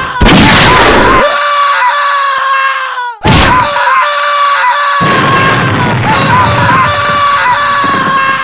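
A loud, high-pitched, held scream that runs on without a break, cut twice by a booming impact: once just after the start and once about three seconds in.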